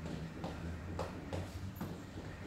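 Platform sandals stepping on a stone-tiled floor during salsa side basic steps: a few light taps about half a second apart, over a low steady hum.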